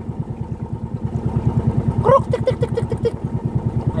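Motorized bangka's engine running steadily with a fast, even beat.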